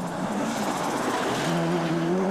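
Group B rally car driving hard on a gravel stage: engine noise over a noisy rush, settling about a second and a half in into a steady, slightly rising engine note.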